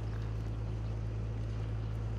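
Steady low hum under a faint background hiss: outdoor ambience with no distinct events.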